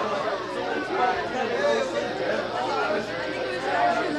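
Overlapping chatter of people talking at once in a bar crowd between songs, with no music playing.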